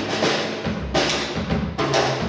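Big band jazz playing live, the rhythm section and drum kit carrying it, with sharp accented hits about once a second.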